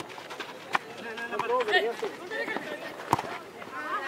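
Distant voices of players and onlookers calling out across an open football pitch, with a few sharp thuds of the ball being kicked, the loudest about three seconds in.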